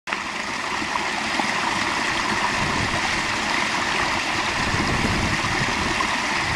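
Small brook pouring over a little stone dam into a pool, a steady splashing rush of falling water.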